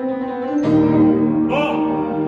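Piano accompaniment under a choir holding sung chords, moving to a new, louder chord about half a second in.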